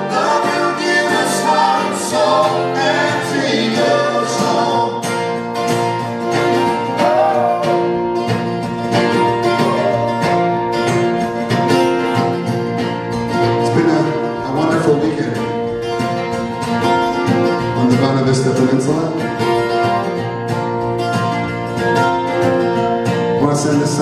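Live acoustic folk music: a steadily strummed acoustic guitar with fiddle, with singing in places.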